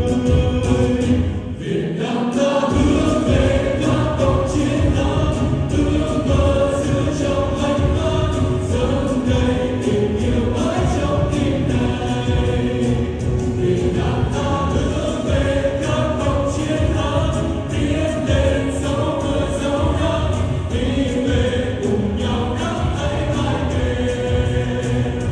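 Live pop song sung in chorus over an amplified backing track with a steady beat; the bass drops out briefly about two seconds in.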